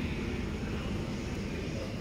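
Steady low hum and hiss of supermarket refrigeration at an open glass-door drinks fridge.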